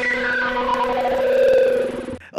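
Synthesized logo sting: two steady held tones under a string of higher tones that glide downward to settle on them, fading out near the end.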